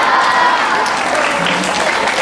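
A large audience of schoolchildren clapping and cheering at the end of a speech, a steady wash of applause with voices mixed in.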